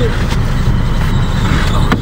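Motor vehicles moving on a dusty dirt road, heard from inside a car: a steady low rumble of engines and tyres, with a couple of brief clicks.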